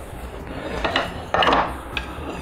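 Hardwood strips of purpleheart and yellowheart knocking together and sliding on a wooden workbench as they are rearranged by hand. A few light knocks come about a second in, then a short scrape.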